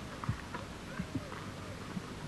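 A few faint, irregular knocks of steps on hard ground over a low outdoor background.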